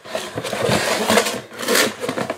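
Cardboard snack box being grabbed and rummaged through, a continuous rapid scratchy rustling; the box turns out to be empty.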